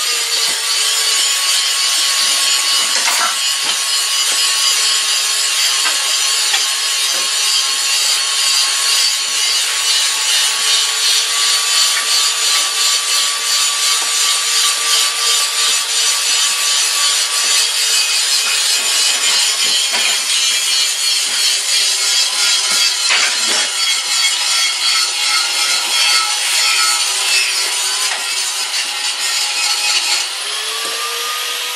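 A motor-driven machine running steadily: a dense whirring hiss over a steady hum, pulsing slightly in loudness.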